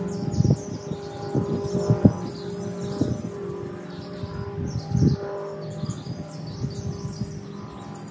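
Small birds chirping in the background over a steady low hum, with a few faint knocks.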